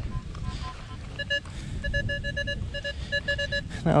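Nokta Makro Legend metal detector sounding target tones as the coil sweeps a buried target. First come about four faint, higher beeps, then about a dozen louder, lower, buzzy beeps at some five a second. The reading bounces between the mid-20s and the 30s, a signal the hunter takes for a pull tab or nickel.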